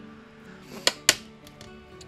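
Faint background music with steady held tones. About a second in, two sharp taps a quarter second apart, small objects knocking on the craft mat.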